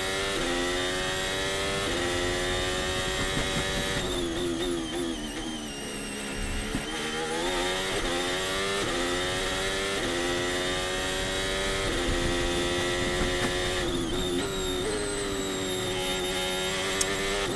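Onboard sound of a Formula 1 car's 1.6-litre turbocharged V6 hybrid engine on a Monaco pole lap. The revs climb and step down again and again with the gear changes, dipping lowest about six seconds in, through the slow corners of the street circuit.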